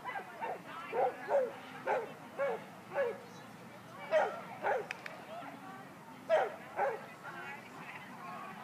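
A dog barking and yipping in short, loud calls, often in pairs about half a second apart, with a pause in the middle.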